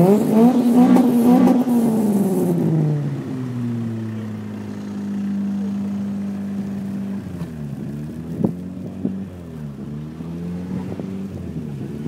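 Car engines revving: the revs climb and fall in the first few seconds, hold steady for a while, then are blipped up and down several times in the second half. A short sharp click sounds once, partway through the blipping.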